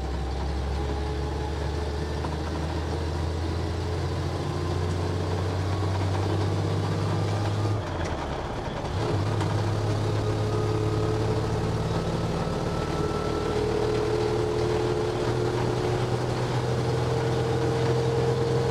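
Dodge M37 truck's flathead straight-six engine pulling under hard acceleration, heard from inside the cab, its note slowly climbing. About eight seconds in it dips briefly for a gear change, then climbs again.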